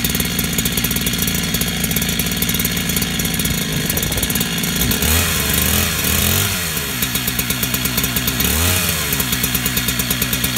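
Husqvarna 375K chainsaw converted to a 372XP with a 52 mm big-bore kit, its two-stroke engine idling, then revved up about five seconds in, dropping back, and given a second short rev near the end before settling to idle again.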